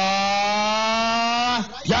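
A man's voice drawing out one syllable of a fighter's name in a long, steady call of about two seconds, with a short glide near the end as the name goes on.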